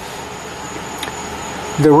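Steady background hiss of room noise with a faint high-pitched whine and a single light click about a second in; a man's voice starts near the end.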